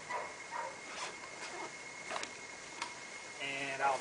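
Scattered light clicks and rustling of hands digging through a backpack, over a faint steady high-pitched whine.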